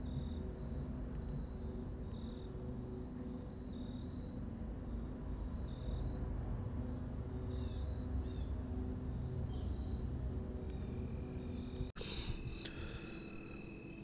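Steady high-pitched chorus of crickets and other insects, with a low rumble underneath; it drops out for an instant near the end.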